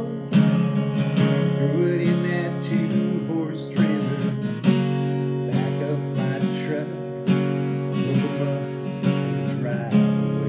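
Acoustic guitar strummed in a steady country rhythm, with a few harder accented strokes.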